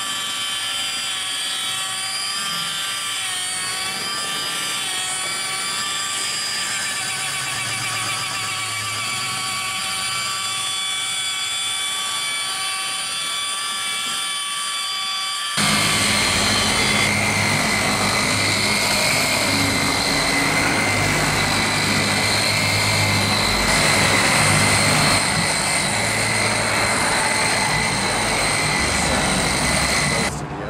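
Corded rotary polisher running at low speed, about 1000 rpm, with a foam buffing pad on truck paint: a steady motor whine. About halfway through it changes suddenly to a louder, rougher running sound with more low rumble.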